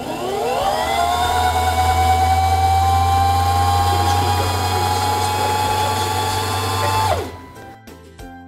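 Singer Simple 3232 sewing machine's motor driving the bobbin winding spindle at speed, winding thread onto a class 15 transparent bobbin. The whine rises in pitch as it speeds up over about the first second, runs steady, then winds down quickly about seven seconds in when it is stopped.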